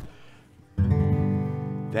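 Acoustic guitar strummed once in a G chord about three-quarters of a second in, the chord ringing on and slowly fading.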